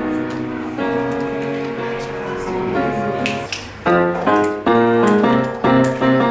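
Piano music: held chords, then from about four seconds in, chords struck in a steady rhythm.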